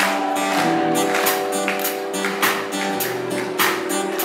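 Live acoustic guitar strummed in a steady rhythm, its chords ringing on between strokes.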